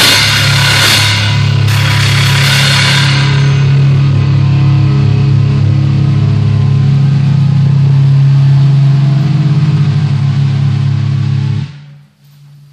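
The ending of a rock song played along on a drum kit. Cymbal crashes ring out and die away over the first few seconds, while the song's last low chord is held and then cuts off abruptly near the end.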